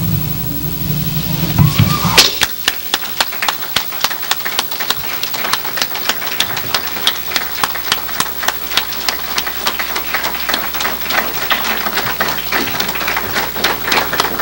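A small audience clapping, with irregular claps that start about two seconds in and grow denser. Before that, a low hum cuts off suddenly.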